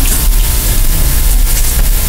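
Steady loud hiss with a low rumble beneath it and no voice. This is the room and recording noise, raised to the level of the speech around it.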